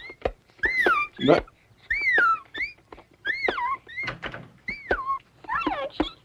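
A series of high-pitched squeaks, about nine of them, each rising and then falling in pitch. They come about one and a half times a second and turn into a quicker flurry near the end.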